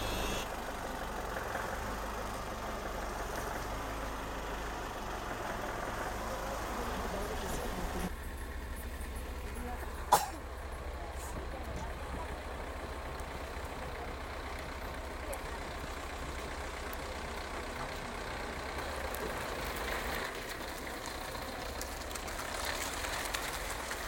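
A vehicle engine running with a low, steady rumble, broken by one sharp click about ten seconds in.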